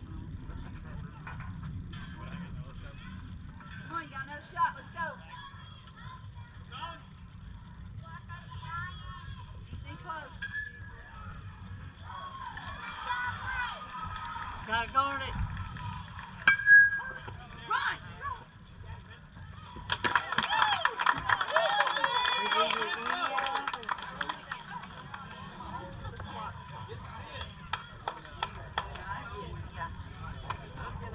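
Youth softball game ambience: scattered shouts and calls from players and spectators over a low rumble of wind on the microphone. About twenty seconds in, a few seconds of louder cheering and clapping.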